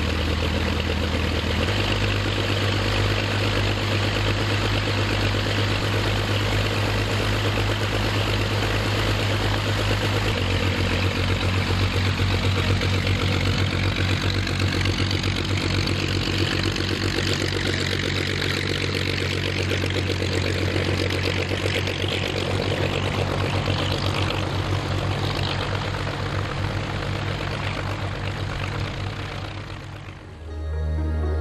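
De Havilland Dragon Rapide's two six-cylinder inverted inline piston engines running steadily at idle, propellers turning. The engine note shifts a little about two seconds in and again about ten seconds in, and eases off slightly near the end.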